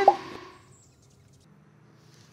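A man's excited shout cut off with a short sharp pop at the very start, fading out within half a second, then a near-quiet pause with a faint low hum.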